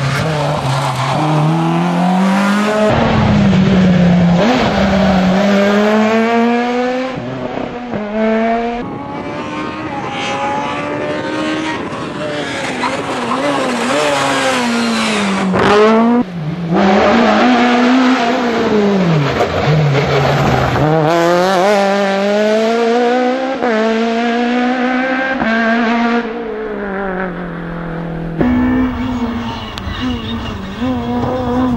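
Rally car engines revving hard through the gears, the pitch climbing under acceleration, dropping at each shift and falling away on braking into corners. The sound changes abruptly several times as one car gives way to another.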